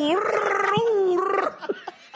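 A man's voice making one drawn-out, gravelly vocal sound effect that rises and falls in pitch, imitating a skateboarder being flung through the air in a wipeout; it stops about a second and a half in.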